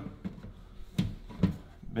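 Clear plastic dome lid being pressed onto a plastic seed-starting tray: a sharp plastic click about a second in, with a softer knock about half a second later.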